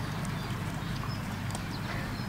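African elephant handling an axe on dry dirt with its foot and trunk: a few light knocks and scrapes over a steady low rumble.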